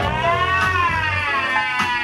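Recorded dance music with a steady bass beat, carrying one long high sliding note that rises and then falls over about a second and a half.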